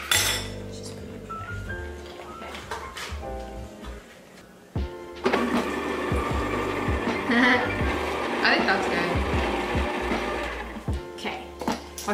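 Electric hand mixer running, beating butter, sugar, egg and vanilla into cookie dough, with background music over it. The mixer's hum drops out briefly about four seconds in and picks up again.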